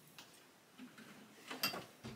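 A few faint clicks and light knocks from handling an acoustic guitar and its amp, with the sharpest click about one and a half seconds in.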